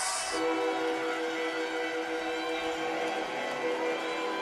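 Arena goal horn sounding right after a home goal: one long, steady chord of several held tones, with crowd cheering underneath.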